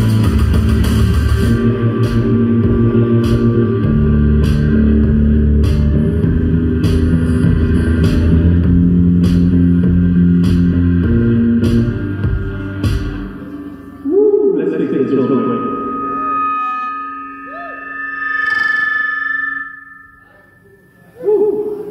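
Live electronic rock from synthesizer and bass guitar over a steady clicking beat, which cuts off abruptly about two-thirds of the way through. After the stop, scattered gliding tones and a few held notes sound on their own.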